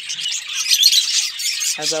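Budgies chirping: many short, high chirps overlapping without a break.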